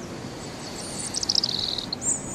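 A bird chirping: a quick run of high chirps starting just under a second in, over a faint steady hiss of outdoor background.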